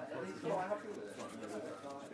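Quiet, indistinct conversation: voices talking in low, murmured tones.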